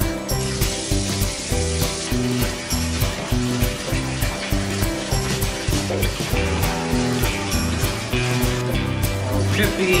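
Background music with a steady beat, over an even hiss of water running from a bathtub faucet that starts just after the beginning as the tub is filled for a dog's bath.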